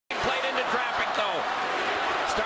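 Ice hockey game sound in an arena: a steady crowd din with several sharp knocks of sticks and puck, most of them in the first second.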